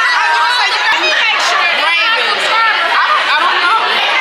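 Several women's voices talking and laughing over one another at close range: a steady, dense chatter of overlapping conversation with no single voice standing out.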